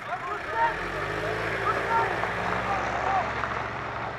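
Engine of a wheeled armoured vehicle running steadily as it drives off along a dirt track, a low hum that settles in about a second in.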